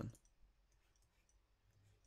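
Near silence, with one faint click about half a second in.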